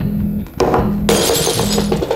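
Glassware smashing: a sharp knock about half a second in, then a burst of shattering glass lasting most of a second. Music with a low, regular pulse plays underneath.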